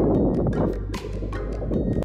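Background music with a percussive beat.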